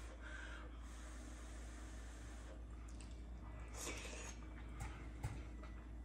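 A man blowing softly on a spoonful of hot soup to cool it, then faint breaths and mouth sounds as he takes the bite, with a couple of small clicks about five seconds in.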